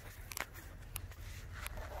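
A few faint short clicks, about a third of a second, one second and a second and two-thirds in, over a steady low rumble.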